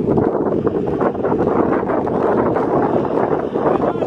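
Wind buffeting the microphone: a loud, steady rumbling noise.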